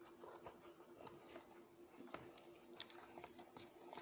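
Faint crinkling and scattered light clicks of small plastic takeaway cups being handled, with fingers picking at the plastic film sealing a lid.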